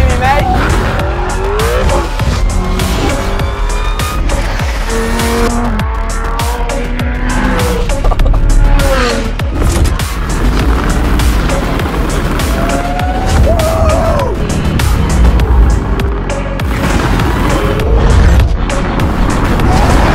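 Lamborghini Urus Performante's twin-turbo V8 being driven hard, its pitch rising and falling repeatedly through revs and gear changes, with tyres squealing. Background music plays alongside.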